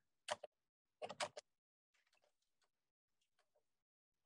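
Near silence on a video-call line, broken by a few short clicks in the first second and a half, then only faint ticks.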